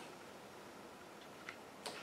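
Near silence: quiet room tone in a hall, with a few faint short clicks, two of them close together near the end.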